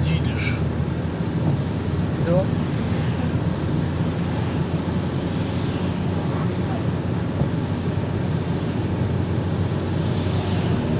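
Steady road and engine noise of a car heard from inside the cabin while driving on a wet, slushy road, an even low rumble with tyre hiss that does not change.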